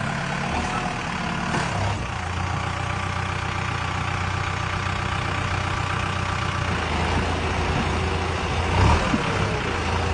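Kubota tractor's diesel engine running steadily, working to pull the tractor out of deep mud.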